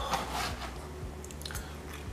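A kitchen knife slicing through a rested ribeye steak on a plastic cutting board, with a fork holding the meat. There is a rasping cut in the first half second and a few light clicks near the end.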